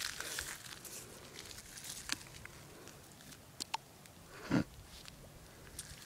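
Bare foot shifting in wet mud and pebbles at the water's edge, with faint scattered crackles. A short wet gurgle comes about four and a half seconds in as a bubble breaks up through the mud.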